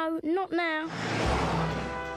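Short high-pitched, wavering voice sounds from the cartoon hedgehogs. About a second in, a car engine sound effect starts up with a burst of noise and a steady low rumble.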